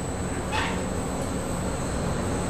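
Steady low machinery rumble from extraction equipment running, with a faint constant high-pitched whine and one short hiss about half a second in.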